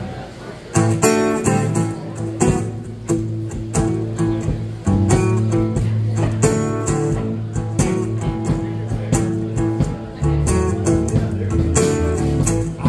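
A live band's instrumental song intro: strummed acoustic guitar over a steady drum beat starting about a second in, with the bass coming in strongly about five seconds in.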